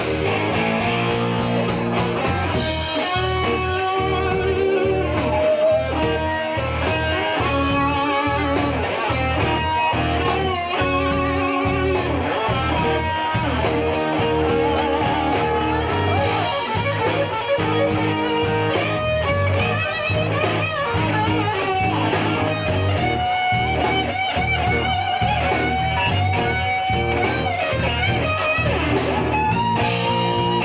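Live rock band playing an instrumental passage: a lead electric guitar plays a melody with bent and wavering notes over a steady drum beat.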